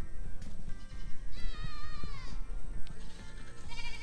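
A young goat bleating: one long call starting a little over a second in that slides gently down in pitch over about a second, then a shorter call near the end.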